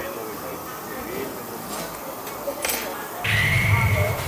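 Restaurant dining-room background of quiet chatter, with a single clink about two and a half seconds in. Near the end a man gives a low closed-mouth "mmm" of approval while chewing a bite of pork.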